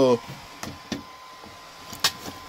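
Items being moved about in cardboard boxes of parts: a few light knocks and a sharp click at the end, with a faint steady high tone in the background.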